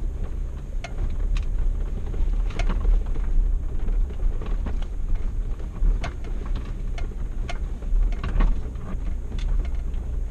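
A Jeep driving slowly over a rough dirt trail: a steady low rumble with scattered knocks and rattles as it rides over bumps.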